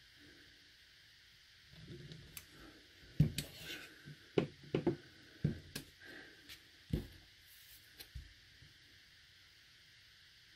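Soft knocks and light rubbing of a clear acrylic stamp block being handled, set down and pressed onto cardstock on a craft table, several short taps coming between about three and seven seconds in.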